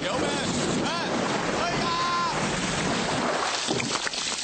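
A steady rushing of water, like spray or surf, with a faint voice rising and falling a few times over it.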